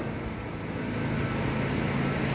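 Steady background noise with a faint low hum and no distinct event.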